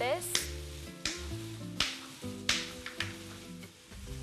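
Background music over a frying pan of diced chicken and onion sizzling in oil and butter, with a few sharp clicks as a knife cuts a zucchini into small cubes in the hand.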